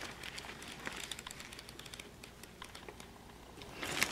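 Faint crinkling and small clicks of plastic packaging being handled: a protein bar wrapper and plastic bags rustling as they are rummaged through. The clicks are busiest in the first couple of seconds and thin out later.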